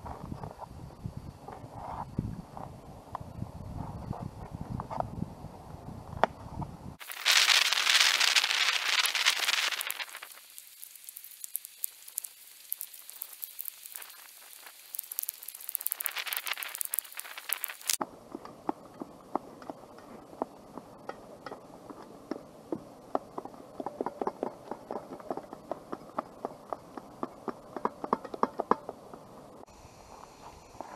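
Knife chopping a green bell pepper on a plastic plate resting on a wooden stump: a quick run of taps, several a second, through the last third. Earlier, a few seconds of loud hiss stand out.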